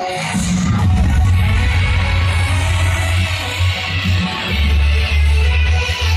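Live electronic dance music played loud over a concert sound system. A heavy bass line drops in about half a second in and carries on under the music.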